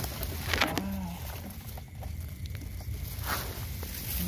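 Dry grass stalks and leaf litter rustling as a hand parts them, in a few short bursts over a steady low rumble.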